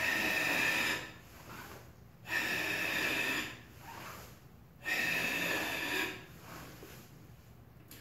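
Three forceful, noisy exhalations, each about a second long and roughly two and a half seconds apart: a karateka's controlled breath, timed to tighten the abdomen as part of the feet, pelvis, breath sequence that directs power into a punch.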